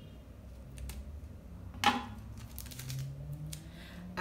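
Scissors snipping a small piece of clear tape in two: one sharp snip about two seconds in, followed by a few light clicks of the tape and scissors being handled.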